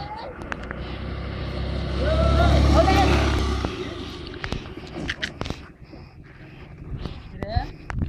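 A motor scooter passing close by, its engine getting louder to a peak about two to three seconds in, then fading quickly as it rides away.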